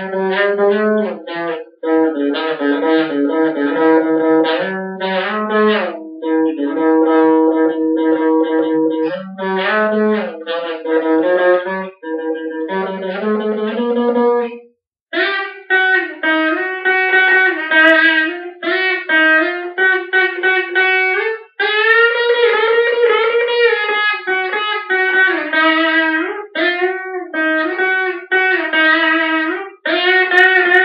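Stratocaster-style electric guitar played solo, a single melodic line of picked notes with string bends, breaking off briefly about halfway through.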